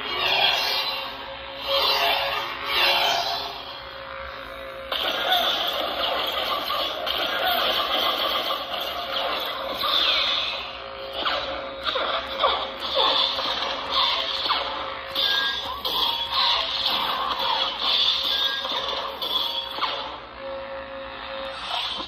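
Proffie V2 lightsaber sound font playing through the saber hilt's small speaker: a steady electric hum with whooshing swing sounds as the lit blade is moved about.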